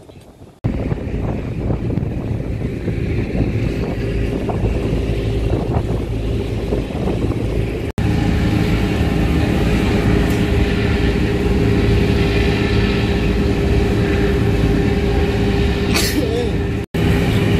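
Loud, steady engine rumble with wind and water noise. About eight seconds in it gives way to the steady drone and hum of a car ferry's engines running under way, over the wash of its churning wake.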